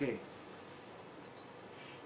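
A man's voice finishing a word, then a pause of faint room tone with a soft, brief rustle near the end.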